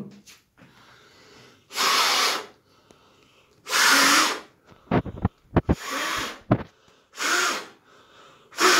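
Hard puffs of breath blown through a white surgical face mask, four strong blows about half a second each, at a candle flame that the mask keeps from going out. A few low thumps come in the middle, around five seconds in.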